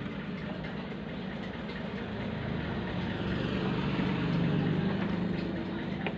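An engine running steadily, swelling slightly louder toward the later part and easing off near the end.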